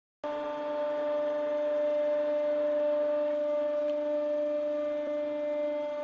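Hydraulic press pump whining at one steady pitch while the ram comes down and crushes a group of wax pillar candles, with a few faint cracks under the whine.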